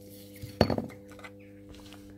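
A single sharp clatter of a hard object being handled, about half a second in, over a faint steady low hum.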